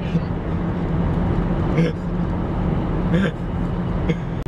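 Steady road and engine drone inside a moving car's cabin, a low rumble with a constant hum.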